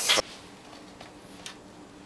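Kitchen utensils against a mixing bowl: a sharp clink right at the start, then two faint ticks over a low steady hum.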